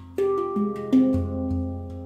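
Svaraa steel handpan tuned to a Low F2 Pygmy 12 scale, played with the fingers: a quick run of about half a dozen struck notes that ring on and overlap above a deep low tone, the loudest strike about a second in.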